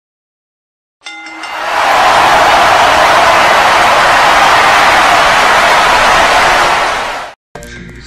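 Intro sting: a brief musical note about a second in, then a loud, steady stadium-crowd roar that cuts off suddenly near the end.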